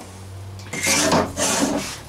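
Rubbing and scraping against the wooden frame: two scraping strokes about a second in.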